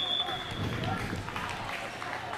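Players' voices calling out across an open football pitch, faint and distant. A high, steady whistle tone carries over from just before and stops shortly after the start.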